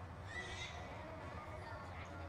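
A horse whinnying once, a short high call about a third of a second in, over a steady low hum.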